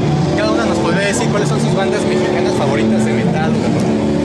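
People talking over a loud, steady low hum and background noise.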